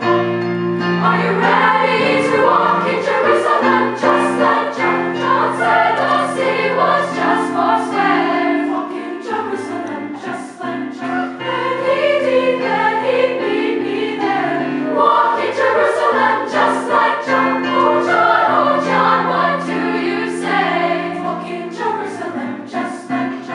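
Youth choir singing a gospel-style spiritual arrangement, accompanied by piano and a steady percussion beat.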